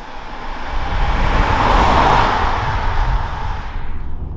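A 2012 BMW 535i xDrive sedan driving past on the road. Its rush of engine and road noise swells to a peak about two seconds in, then fades as it goes by.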